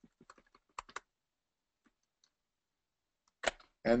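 Faint clicking of a computer keyboard and mouse: a quick run of sharp clicks in the first second, then a couple of fainter ticks about two seconds in.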